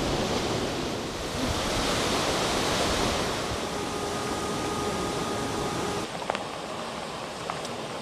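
Rough, muddy sea surf with wind: a steady rushing noise. A faint steady tone sounds in the middle, and from about six seconds in the noise is quieter, with two sharp clicks near the end.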